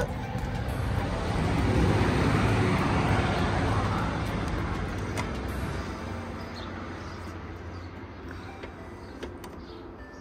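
A road vehicle passing on the street, its noise swelling over the first two or three seconds and then slowly fading away.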